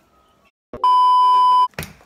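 Electronic beep edited into the soundtrack: one steady, loud, high tone lasting just under a second, starting about a second in. A short sharp click follows near the end.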